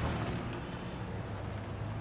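Pickup truck engine running at low speed as the truck rolls slowly past, a steady low hum.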